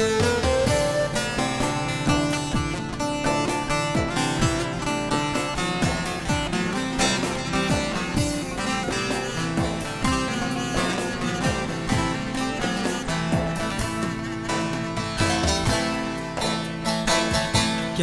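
Bağlama (long-necked saz) playing an instrumental passage of a Turkmen folk song: a continuous run of plucked notes.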